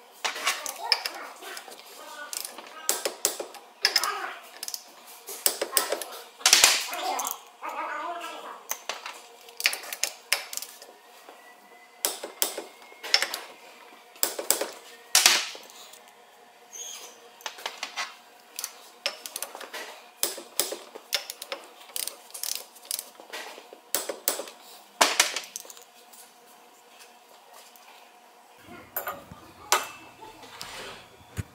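Irregular sharp metallic clicks and clinks of hand tools working on a differential carrier as its ring gear bolts are torqued.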